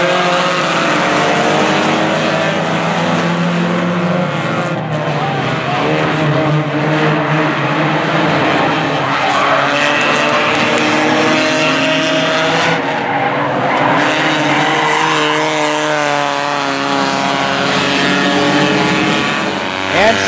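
A field of front-wheel-drive stock cars racing on a short oval track, several engines running hard at once with their pitches rising and falling as the cars pass.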